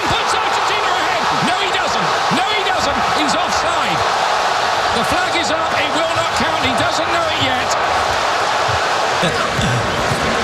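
Large stadium crowd of football fans cheering and shouting, a steady dense din of many overlapping voices.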